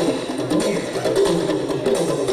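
Live acoustic string band playing an instrumental, with plucked upright bass and mandolin notes and crisp, percussive picking.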